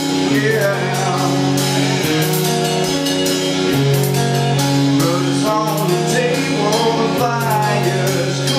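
Live rock band: a male singer's sustained, sliding vocal line over guitar and a drum kit.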